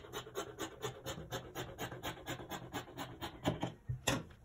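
Fabric scissors cutting through cloth on a wooden table: a quick, even run of snips that stops shortly before the end.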